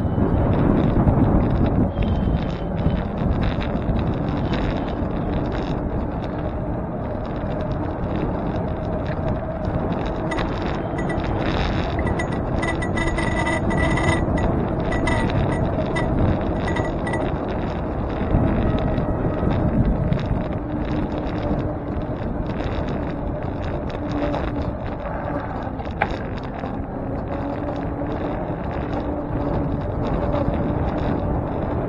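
Wind rushing over the microphone of a bicycle-mounted camera while riding, with tyre and road noise underneath. A thin high tone comes and goes around the middle.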